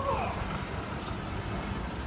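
A car driving past close by, with a steady low engine and road rumble over street traffic noise.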